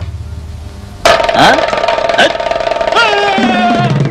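Film background score: after a quiet low drone, a loud sustained chord comes in suddenly about a second in, with sliding notes over it and a falling note near the end.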